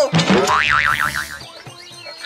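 Cartoon-style comedy sound effect: a quick downward swoop in pitch, then a whistle-like tone that warbles rapidly up and down for about a second before fading.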